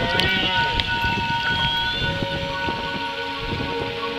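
Humpback whale song: arching, sliding moans near the start and a rising, high whoop a little after a second in, over steady held tones and a crackling noise.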